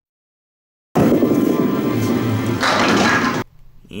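A candlepin ball rolling down a wooden lane, then clattering into the thin pins about two and a half seconds in, knocking down the remaining split pins for a spare. The sound cuts in suddenly about a second in and drops away shortly before the end.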